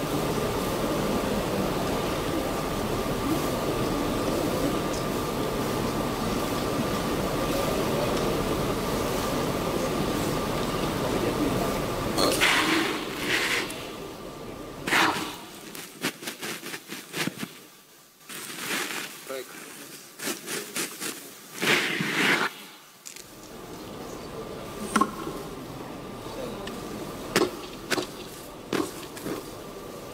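Large-hall ambience picked up through table microphones: a steady hum with a faint steady tone and indistinct murmur. From about twelve seconds in it breaks into scattered knocks and brief indistinct voices with quiet gaps, then the steady hum returns near the end.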